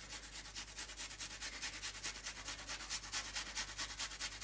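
A small piece of sour apple being rubbed on a small metal hand grater over a bowl: quick, even rasping strokes in a steady rhythm.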